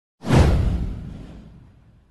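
An intro whoosh sound effect with a low boom under it, hitting suddenly just after the start and dying away over about a second and a half.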